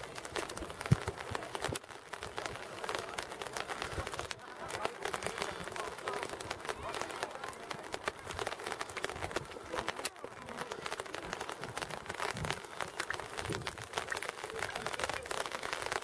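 Faint, distant voices of footballers across a grass pitch, with scattered claps and a steady crackling patter over the outdoor air.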